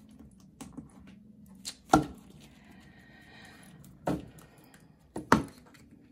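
A handful of sharp, separate taps and clicks of a tarot deck being handled and knocked against the tabletop, the loudest about two seconds in.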